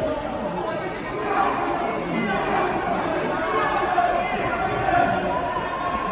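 Several voices talking and calling out over one another, with the echo of a large hall.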